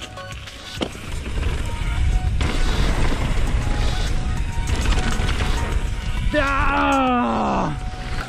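Downhill mountain bike riding a dirt jump trail, heard from a helmet camera: wind buffeting the microphone and tyres rumbling over packed dirt, steady and loud from about a second in. Near the end a rider lets out a long shout that falls in pitch.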